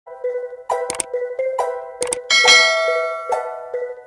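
Background music of short, plucked notes, with one bright, bell-like note about two and a half seconds in that rings on and fades slowly.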